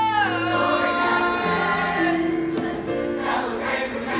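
Middle school choir singing with digital piano accompaniment. A long high held note slides down just after the start, and the choir carries on over steady keyboard chords.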